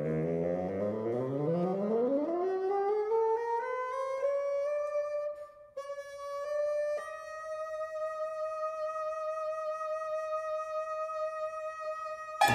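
Amplified bassoon alone, sliding upward over about four seconds from its low register to a high note, breaking off briefly a little past the middle, then holding one long high note.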